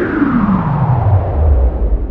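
Outro logo sound effect: a loud tone that slides steadily down in pitch over a rushing noise, settling into a deep rumble about halfway through.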